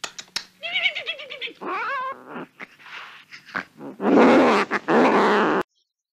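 A cat meowing several times in short calls that bend up and down, then letting out a loud, harsh yowl for a second and a half that cuts off suddenly.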